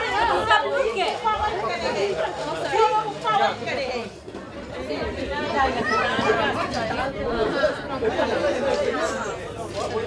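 A group of women chattering, several voices overlapping at once.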